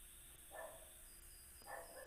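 Near silence, broken by two faint, short animal calls, about half a second in and again near the end.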